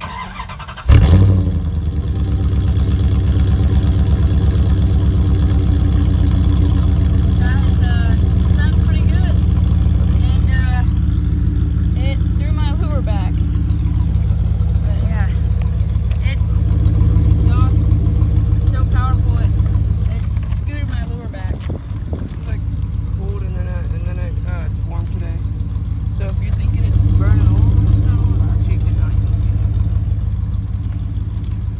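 Dodge Durango R/T's 5.9-litre V8 cranked and started: it catches about a second in with a loud burst, then idles steadily at the exhaust. The engine note swells twice, once around the middle and again near the end.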